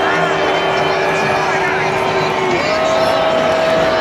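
Large stadium crowd making a loud, dense noise of cheering and shouting. Over it run two long held notes: a lower one, then a higher one starting about two and a half seconds in.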